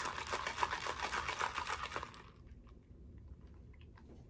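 Ice rattling in a plastic cold cup as the drink is swirled to mix it, a rapid clatter that stops about two seconds in.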